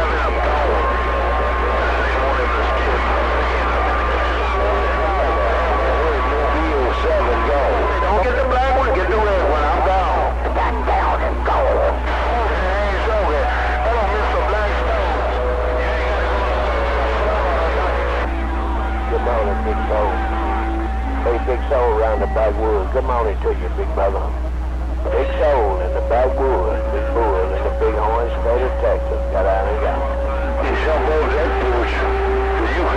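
CB radio receiver audio from a crowded channel: several stations talking over one another, garbled and unreadable. Steady whistling tones from keyed-up carriers come and go through it, over a constant low hum.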